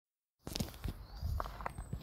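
Outdoor riverside ambience: irregular clicks and knocks over a low rumble, with two brief high bird chirps, one about halfway through and one near the end. It starts after a moment of silence.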